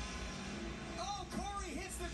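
Low, steady rumble of a moving vehicle heard from inside it, with a faint voice in the background starting about a second in.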